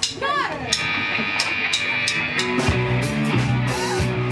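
Punk rock band starting a song live: a drummer's count-in of sharp, regular hits, about three a second, then electric guitars, bass and drums come in together about two-thirds of the way through. A brief spoken word comes at the very start.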